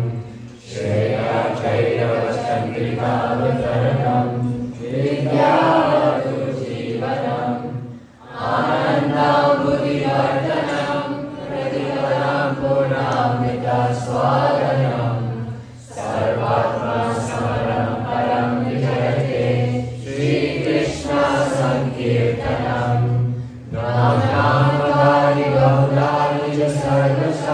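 A roomful of voices chanting devotional Sanskrit verses together in unison, led by the presenter. It goes in long phrases of about eight seconds, with short breaks for breath between them.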